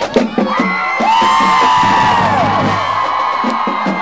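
College marching band's brass sounding a long held note from about a second in, over a cheering, whooping crowd.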